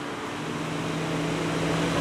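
A motor vehicle approaching, its engine hum and road noise growing steadily louder.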